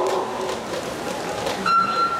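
Electronic starting signal of a swimming race: a steady high beep that starts abruptly about one and a half seconds in and sends the swimmers off the blocks, over a background murmur of the pool hall.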